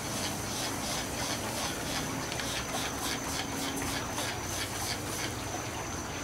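A hand-held trigger spray bottle spritzing smoking beef short ribs: a quick, even series of short hissing squirts, about three or four a second.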